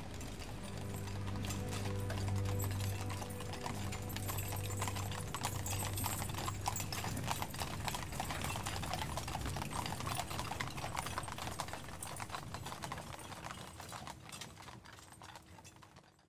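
Horses' hooves clip-clopping on pavement as a team draws a funeral caisson, with low held tones under it for the first several seconds. The sound fades out at the end.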